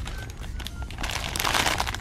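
Crinkling of a thin clear plastic wrapper as the foam squishy toy inside it is squeezed, starting about a second in and getting louder.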